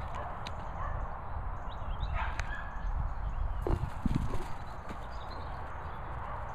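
Footsteps on a grass lawn with a steady low rumble of wind and handling on the microphone, and a short voiced sound about four seconds in.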